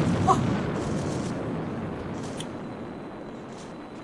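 Rocket-engine roar of a Mars descent stage, a rumbling noise that fades away steadily as the sky crane flies off. A brief exclamation of "Oh" comes just after the start.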